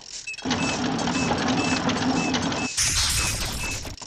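Cartoon machine sound effect: a mechanical whirring with a steady low hum for about two seconds, ending in a short hiss. A light ping repeats about twice a second through it.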